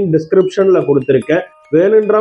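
A voice narrating, with a short ringing tone sounding faintly under it around the middle.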